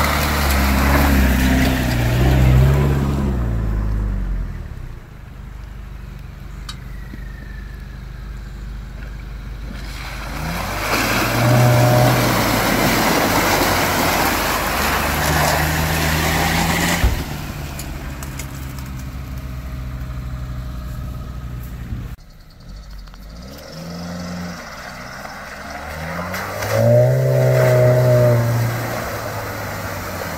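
Off-road 4x4 engines, a Toyota Land Cruiser and a Suzuki Vitara, revving in repeated bursts, rising and falling, while driving through mud and water. One sharp knock about halfway through.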